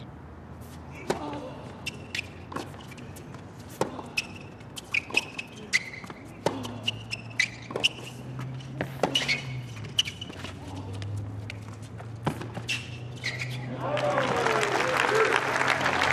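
Tennis rally on a hard court: sharp racket-on-ball strikes and ball bounces every second or so, with brief shoe squeaks on the court surface. Near the end the crowd cheers and applauds the finished point.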